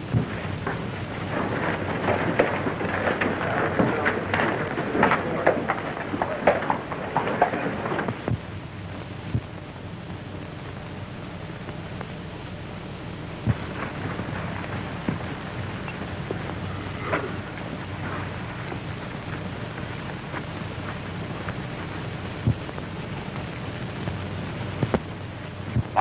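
Hoofbeats of several horses on a dirt street: a dense, irregular clatter for about the first eight seconds, then only occasional single hoof knocks as the horses stand. Under it runs the steady hiss and low hum of an old film soundtrack.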